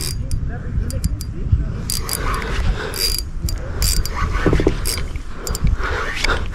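Fishing reel clicking in short, irregular bursts while a hooked fish pulls against the bent rod, over a steady low rumble.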